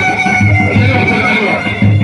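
Loud Iraqi choubi dance music: a reed pipe holds a high, steady tone over a drum beating underneath.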